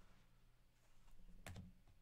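Near silence: a faint low hum, with one soft click about one and a half seconds in and a fainter one near the end, from a trading card in a hard plastic holder being handled.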